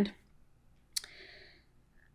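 A single sharp click about a second in, followed by a brief faint hiss, in an otherwise quiet pause.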